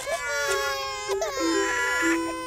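Several cartoon baby voices crying at once, in wails that slide down in pitch, over a steady held musical note that comes in partway through.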